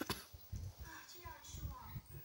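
A baby babbling in short, bending vocal sounds, with a few soft low thumps.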